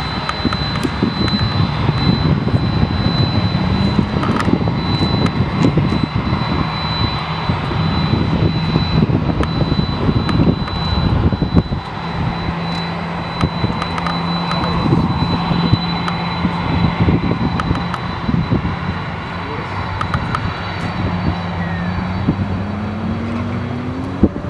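Lexus IS300's inline-six engine revving up and down as the car is driven hard through tight turns, the pitch rising and falling with acceleration and braking and climbing again near the end.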